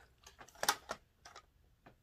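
Rummaging for small packaged cosmetics: a handful of light, sharp clicks and ticks as items knock together, the loudest a little under a second in.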